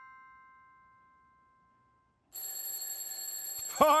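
A chime fades away over the first two seconds. About two seconds in, a cartoon alarm clock's bell starts ringing, a steady, continuous high ring.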